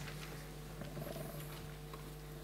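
Room tone with a steady low electrical hum from the hall's sound system, and a few faint small handling noises.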